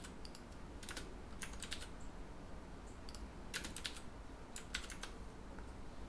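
Computer keyboard keys clicking in short clusters of a few keystrokes with pauses between, as code is copied, pasted and edited.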